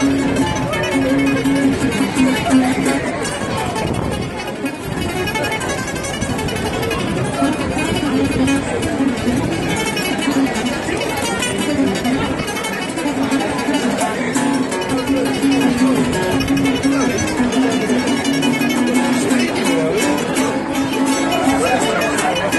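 Two acoustic guitars playing a fast tune together, one picking a busy melody over the other's accompaniment.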